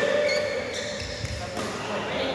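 Court shoes squeaking and feet thudding on an indoor badminton court: a few short, high squeaks early on, then a dull footfall about a second in.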